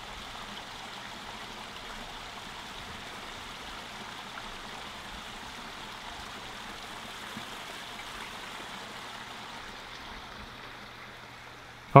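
Small garden waterfall splashing steadily into a pond, an even rush of falling water that eases slightly near the end.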